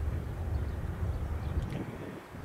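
Freight cars of a mixed freight train rolling away on curved track, a low steady rumble.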